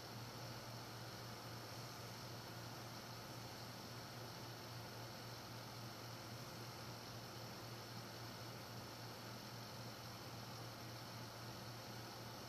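Faint, steady hiss with a low hum underneath: the room tone and noise floor of the recording, with no other sound.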